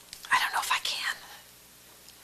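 A short breathy, whispered utterance from a person, lasting under a second, about a third of a second in.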